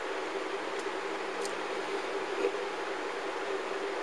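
Steady background hiss with a faint low hum: room tone, with a couple of faint ticks about a second in.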